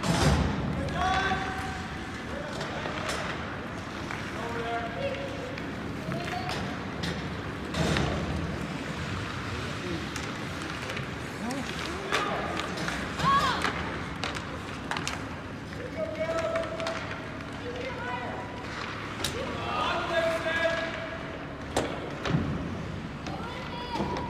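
Sounds of an ice hockey game in an arena: scattered shouts and calls from players and onlookers, with now and then a sharp knock of a stick, puck or body against the ice or boards.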